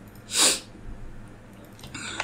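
A single short, loud puff of breathy noise from a person close to the microphone, about half a second in.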